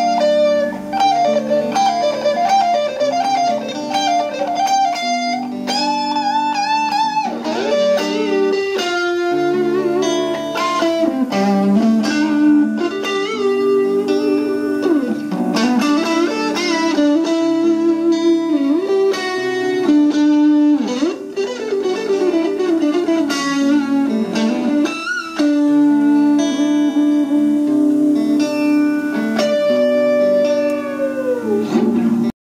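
GBS electric guitar played through an amplifier: a melodic lead line with string bends and vibrato over held lower notes.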